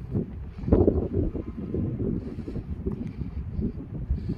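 Wind buffeting the microphone in uneven gusts, a low rough rumble that is strongest about a second in.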